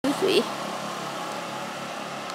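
A short burst of a man's voice at the very start, then the steady hum of motorbikes running along a street some way off.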